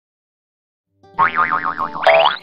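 Cartoon boing sound effect: a wobbling tone whose pitch swings rapidly up and down several times, starting about halfway in after silence.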